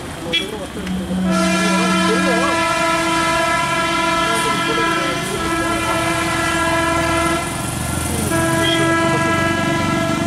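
A vehicle horn sounding in one long steady blast of about six seconds, breaking off briefly, then sounding again. A lower second tone is heard alongside it near the start.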